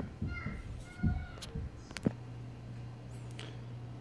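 Handling noise from a hand-held camera being moved around the monitor: soft knocks and rumbles, then two sharp clicks about half a second apart. After the second click a steady low hum carries on to the end.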